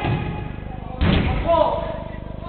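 A single heavy thud about a second in from a football being struck hard on an indoor five-a-side court, with players' shouts around it.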